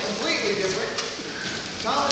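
Speech: a man's voice talking in a large hall, over light audience noise.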